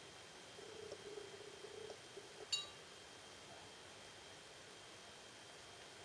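Near silence, with one faint, short clink about two and a half seconds in: a metal fork touching the side of a glass of water as it is moved.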